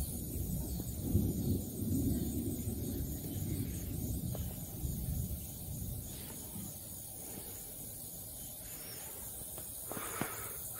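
Outdoor ambience on a handheld camera microphone: a low rumbling noise that is stronger for the first few seconds and then eases, over a steady high hiss, with a couple of faint clicks.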